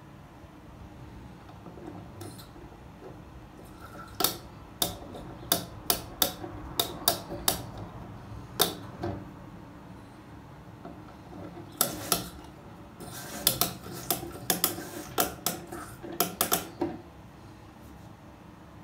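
Sharp plastic clicks as a screwdriver turns the cross-head adjusting screw on a toilet cistern's fill valve to set the water level. The clicks come irregularly in two runs, the first from about four seconds in and a second, denser one from about twelve seconds in.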